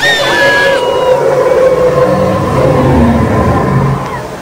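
Riders on a log flume water ride screaming: short high gliding screams at first, then a long held scream over the rushing water and rumble of the boat.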